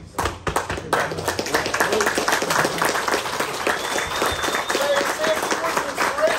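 A small group clapping together. The clapping starts just after the beginning and keeps on, with voices faintly under it.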